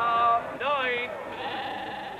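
A crowded pen of sheep bleating: one short steady bleat, then a longer wavering bleat about half a second in, with fainter bleats from other sheep behind.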